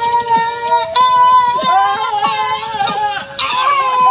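A song with a steady beat, its sung vocal holding long notes, one of them wavering near the middle.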